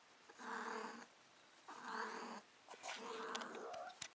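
Female calico cat in heat calling, three drawn-out calls in a row with short pauses between, the last the longest: the mating call of a queen in estrus.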